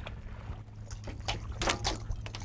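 Hooked bluefish thrashing and splashing at the water's surface beside a boat hull, with a few sharper splashes in the last half-second. A steady low hum runs underneath.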